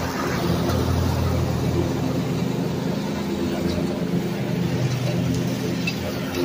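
Zero-turn riding mower running steadily as it mows, its engine giving a constant low hum.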